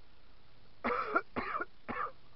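A man coughing three times in quick succession, starting about a second in.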